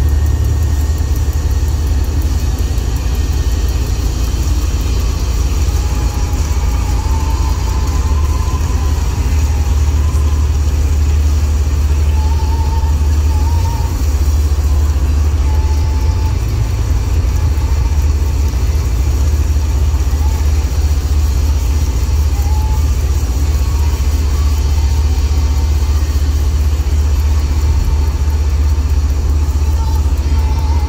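Road and engine noise inside a moving car's cabin at highway speed: a steady low rumble.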